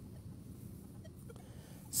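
Quiet, steady low background rumble with a few faint ticks a little after a second in.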